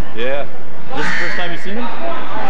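Voices shouting over one another at a basketball game, spectators and players calling out in a gymnasium. There are two strong shouts, one at the start and one about a second in.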